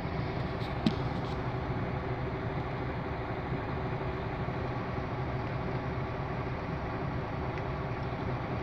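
Mercedes-Benz Actros truck diesel engine idling steadily, heard from inside the cab. There is a single short click about a second in.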